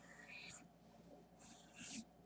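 Faint scratching of a felt-tip Sharpie marker drawing lines on paper: one stroke at the start and another short one near the end.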